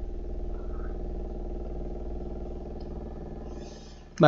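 A steady low engine hum with a fine pulsing texture, fading away near the end.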